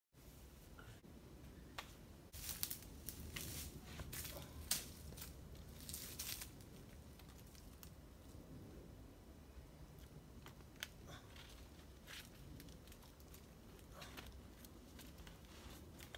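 Faint rustling, scuffing and crinkling with scattered sharp clicks, busiest in the first half: a boulderer moving from the crash pad onto the rock, with shoes and hands scuffing on stone and the pad rustling.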